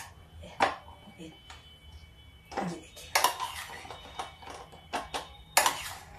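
A steel spoon clinks and scrapes against a small stainless-steel bowl and thali as baati are turned in ghee. There are several sharp clinks, a faint metallic ringing in between, and the loudest clink comes near the end.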